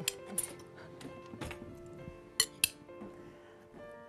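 Metal fork clinking against a glass mixing bowl as the filling is stirred and scooped, with two sharp clinks about two and a half seconds in. Soft background music plays underneath.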